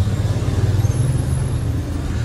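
Steady low rumble of town-street traffic, with no single event standing out.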